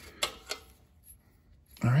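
Two light clicks about a third of a second apart, from handling the loosened oxygen sensor and its wiring on the exhaust pipe, then a quiet stretch before a man starts to speak near the end.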